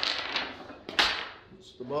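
Steel laptop-stand parts knocking and clanking as they are pulled from foam packaging and handled over a wooden table: a knock at the start and a sharper metallic knock about a second in.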